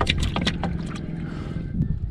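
Small wooden fishing boat on the water: a knock against the hull, then a steady low rumble of the hull and water.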